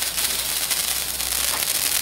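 A handheld sparkler fizzing and crackling with a steady, high hiss.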